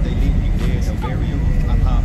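Steady low rumble inside a car's cabin, with faint vocal sounds underneath.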